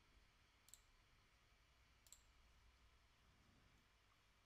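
Near silence with two faint computer mouse clicks, about a second and a half apart.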